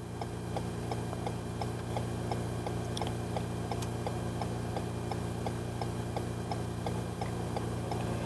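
Steady, regular ticking, about two and a half ticks a second, over a low steady hum inside a vehicle's cabin.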